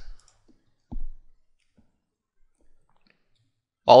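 A single computer mouse click about a second in, with a few very faint ticks after it, as a unit test is launched from a right-click menu.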